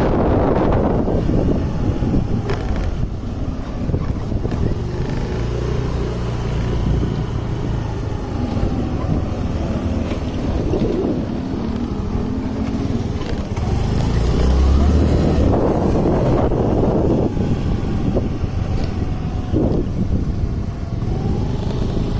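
Wind buffeting the microphone on a moving Honda two-wheeler, over the low rumble of its engine and road noise.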